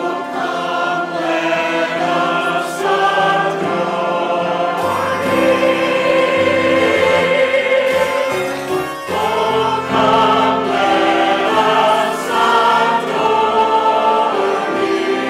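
Church choir of mixed men's and women's voices singing in harmony over an instrumental accompaniment, with a short pause between phrases about nine seconds in.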